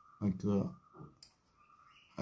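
A single sharp click from a computer mouse button, just over a second in, between brief bits of a person's voice.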